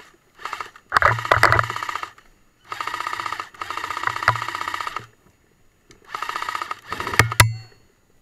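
Airsoft LSW electric replica firing a series of full-auto bursts, about five, each half a second to a second and a half long, with a rapid even rattle of shots over the motor and gearbox whine. Two sharp cracks come near the end.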